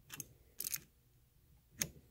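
Small adjustable wrench clicking and scraping against the brass hose nuts on an oxy-acetylene torch handle as they are snugged up: a click just after the start, a short scrape about half a second in, and a sharp click near the end.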